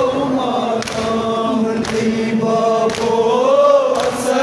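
Men chanting a noha, a Shia lament, in chorus, held on long wavering lines. A sharp beat sounds about once a second under the chant, the rhythm of hands striking chests in matam.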